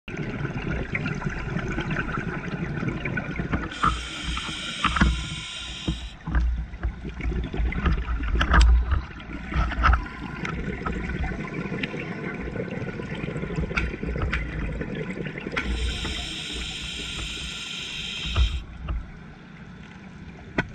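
Scuba diver breathing through a regulator, recorded underwater through a GoPro housing: two long inhalation hisses about twelve seconds apart, each followed by low bubbling bursts of exhaled air. A crackle of scattered clicks runs underneath.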